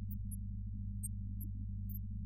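Steady low hum and rumble with a few faint ticks, from vinyl record playback in a quiet stretch of the groove; no organ notes stand out.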